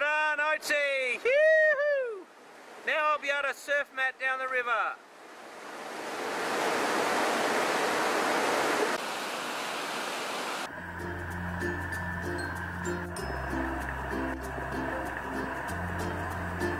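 A voice calls out in high, swooping tones for the first few seconds. Then rushing whitewater swells and fades. About two-thirds of the way through, background music with a steady bass beat begins.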